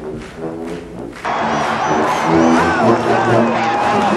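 Brass band music over a cheering stadium crowd, cutting in suddenly and loud about a second in after a short stretch of quieter held tones.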